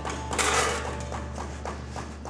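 Thin steel sheet sliding and shifting on a steel workbench top: a brief rasping scrape about half a second in, with faint metallic ringing, then a few light knocks. Steady background music runs underneath.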